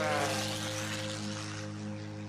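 A propeller airplane passing, its engine pitch falling and its noise fading over the first second or so, under background music with steady sustained notes.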